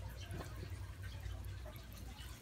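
Faint handling sounds, soft rustling with a few small ticks, as a cloth bag of red worms and damp bedding is tipped out into a plastic bin, over a low steady hum.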